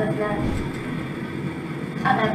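Steady road and tyre noise from a Hyundai Santa Fe driving on a rain-wet road, heard from inside the car through the dashcam.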